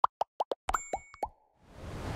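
A rapid run of about ten short, rising plops, cartoon-style pop sound effects, in the first second or so, followed near the end by a swelling whoosh.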